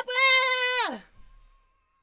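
A singing voice holds a high C5 in short repeated bursts, then slides steeply down and breaks off about a second in.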